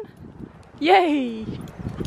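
A woman's voice gives one drawn-out call about a second in, falling in pitch.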